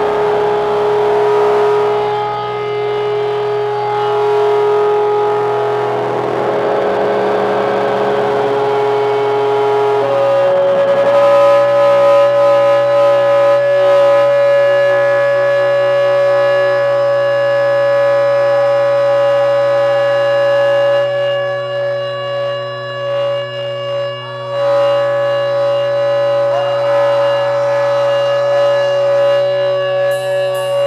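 Loud electric guitar feedback drone: one tone held for about ten seconds, then a step up to a higher note that is held to the end, over a steady low hum.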